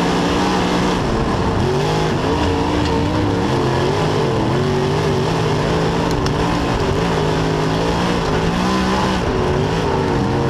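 Dirt late model race car's V8 engine heard from inside the cockpit, loud and continuous, its pitch repeatedly falling and rising as the throttle is lifted and reapplied.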